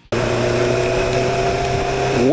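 Motorcycle engine running at a steady, unchanging pitch while cruising, over a steady rush of wind and road noise; it cuts in suddenly just after the start.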